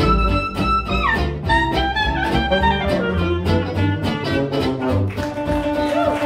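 A small live swing band (clarinet, tenor saxophone, double bass and two guitars) playing an instrumental passage over a steady strummed beat and walking bass line. A high held reed note bends down and falls away about a second in.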